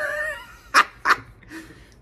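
A man laughing: a high-pitched, wavering squeal of laughter at the start, then two short, sharp breathy bursts.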